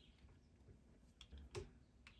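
Near silence, with a few faint clicks a little after a second in as a small plastic toy hair crimper is handled and opened.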